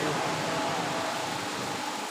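Steady background hiss and hum through a public-address system, with the last of the reciter's amplified voice dying away in its echo at the very start.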